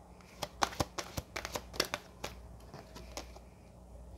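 A deck of oracle cards being shuffled and a card drawn: a quick run of sharp card snaps and taps over the first two seconds or so, then only a few faint ones.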